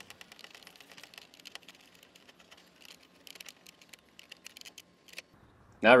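Phillips screwdriver turning a screw out of plastic door trim: a scatter of faint, light clicks and ticks.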